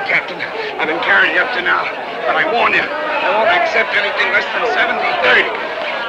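Boxing crowd shouting and yelling, many voices overlapping into a steady din.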